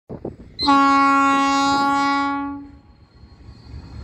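ALCo diesel locomotive's air horn sounding one long blast of about two seconds. As it dies away, the low rumble of the approaching freight train remains.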